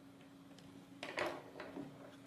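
Light handling clatter about a second in, a small screwdriver being put down and the black plastic robot-car chassis being handled on a table, followed by a couple of smaller knocks. A faint steady hum sits underneath.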